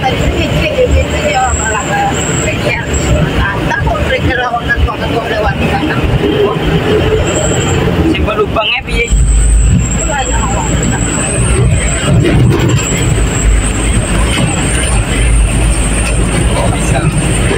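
Truck engine running under load and the cab shaking and rattling as it drives over a rough, rutted dirt road; the low engine rumble gets heavier about nine seconds in. Voices talk underneath.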